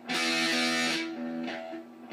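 Electric guitar playing a two-finger power chord on the fifth and fourth strings, struck once and ringing for about a second before fading.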